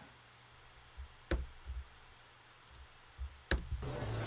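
Computer clicks over quiet room tone in a small room: one sharp click a little over a second in, a couple of faint ticks, and a louder click near the end.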